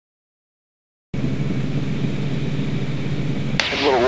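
Extra 300L aerobatic plane's six-cylinder Lycoming engine and propeller running steadily in flight, a low even drone that cuts in abruptly about a second in. A hiss comes in near the end.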